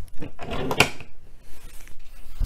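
Hard plastic clicks and knocks from a Code-A-Pillar toy's segments being handled and one pulled off its plug connector. The loudest cluster of clicks comes just under a second in.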